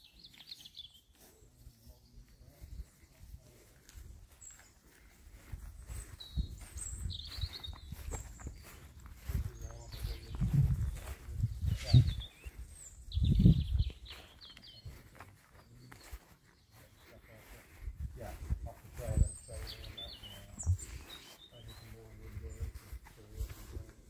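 Outdoor ambience: small birds chirping now and then over irregular low rumbling on the microphone, loudest about midway through.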